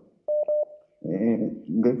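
Two short electronic beeps at one steady pitch, in quick succession, followed by a man speaking.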